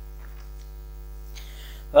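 Steady electrical mains hum from the recording setup, a low drone with several fixed tones above it, holding at an even level. A faint short hiss comes in near the end.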